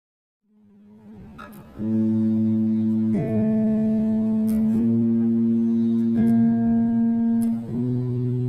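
Electric bass playing a slow finger warm-up exercise: single held notes, a new one about every one and a half seconds, beginning about two seconds in.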